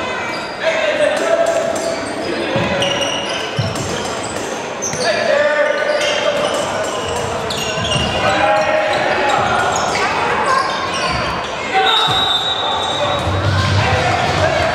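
Handball bouncing and slapping on a sports hall's wooden floor, with players shouting in a reverberant hall. Near the end a steady high whistle tone sounds for about two seconds, a referee's whistle.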